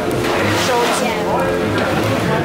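Indistinct voices, not clearly words, over background music; no pouring or machine sound stands out above them.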